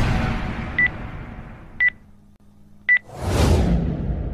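Countdown sound effect for a video intro: three short, high beeps about a second apart, over a whooshing rush of noise that fades away and then a second whoosh that swells up near the end.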